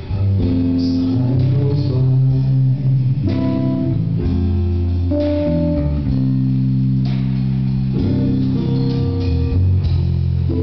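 Instrumental passage of a backing track, led by guitar over a steady bass line, with held notes and no singing.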